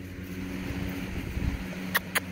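A steady low mechanical hum, like an engine running, with a haze of noise that swells and fades in the middle.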